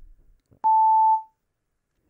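A single electronic beep from the Aptis speaking-test simulator: one steady, pure tone lasting about half a second, starting with a slight click just over half a second in. The beep signals that the answer recording has started.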